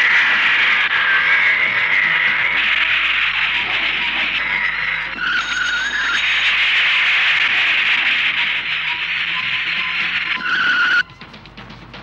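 Film background music over a car driving in, with a tyre screech about five seconds in and another just before the sound drops away abruptly near the end.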